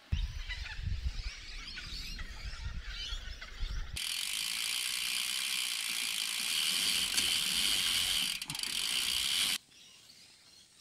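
Wind rumbling on the microphone with faint bird chirps. About four seconds in, a mountain bike's rear freehub starts a fast, even ratchet buzz as the cranks are turned backwards while the chain is oiled, and it stops abruptly shortly before the end.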